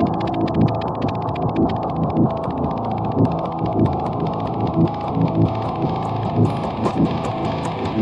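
Instrumental trap beat in a muffled, stripped-back section: the heavy bass and drums have dropped out, leaving an electric guitar riff with its highs cut off and faint rapid ticks above it. Sharper clicks come back near the end as the beat builds back in.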